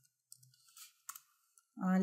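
A handful of faint, irregular clicks of computer keyboard keys being typed.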